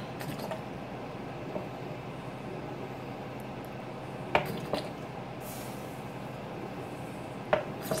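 Water pouring from an upturned plastic bottle into the fill port of a Hamilton Beach steam iron's water tank, a steady flow with two short plastic knocks, about four and a half and seven and a half seconds in.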